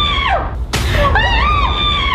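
A high-pitched scream of fright, heard twice in a row with the same rising-then-falling shape, over a steady low rumble.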